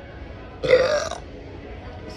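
A woman's loud burp, one long voiced belch lasting about half a second.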